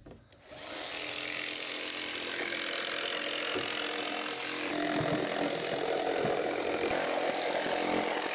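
Jigsaw cutting along a curved line through a thin glued-up wooden surfboard deck skin. It starts about half a second in and runs steadily, and its tone shifts higher about five seconds in.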